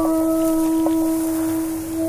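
A single steady, low held tone with overtones, a sustained drone on the film's soundtrack.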